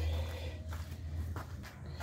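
A faint steady low hum under soft rustling, with a few light knocks of handling.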